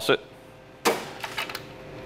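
A single sharp clack about a second in, followed by a few faint ticks, as a beer-line jumper hose with its metal faucet-style fittings is handled against the chrome draft tap tower.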